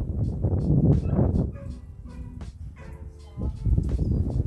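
Low rumbling noise for about the first second and a half, then a few short, pitched whining calls from a dog, with the rumble coming back near the end.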